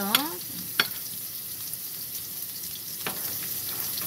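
Julienned carrots sizzling in oil in a nonstick wok, a steady high hiss. A few sharp clicks sound over it, about one second in and again near three seconds.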